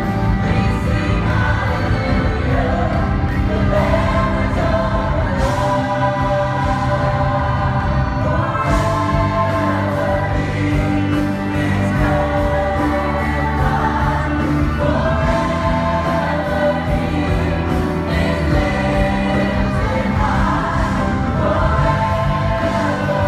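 Live gospel worship music: a group of female lead vocalists and a large choir singing together with sustained notes over keyboard and guitar accompaniment.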